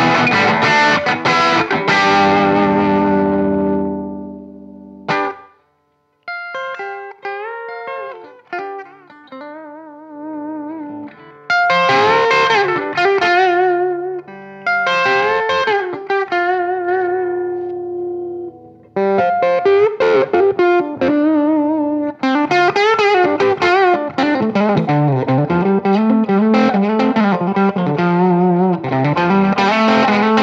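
Overdriven electric guitar, a Gibson Les Paul Junior, played through a Fender Silverface Deluxe Reverb valve combo amp. A distorted chord rings and dies away over the first few seconds, then after a brief silence a lead line of single notes with string bends and finger vibrato follows. It starts quietly and grows louder and busier from about a third of the way in.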